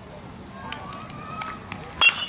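Outdoor field background with a few light clicks, ending with the sharp crack of a baseball bat hitting a pitched ball.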